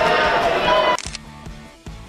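Background music with voices in the room. About halfway through the sound drops off suddenly, leaving only fainter music, with a click near the end.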